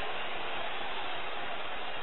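Steady football stadium crowd noise, an even wash of sound with no distinct chants, shouts or whistles.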